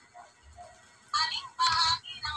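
A high-pitched, sing-song voice: two short sung phrases in the second second, after a nearly quiet first second.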